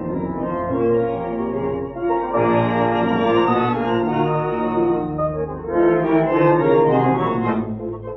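A tango orchestra plays the instrumental opening of a vals, in three-quarter time. It has held, swelling chords over a piano, with a faint steady low hum underneath.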